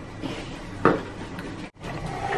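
Small plastic toy pieces from a Kinder Surprise egg being handled and pressed together, with soft rattling and one sharp click a little under a second in.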